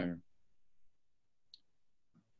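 The last syllable of a man's speech, then a quiet pause broken by one faint, short click about one and a half seconds in.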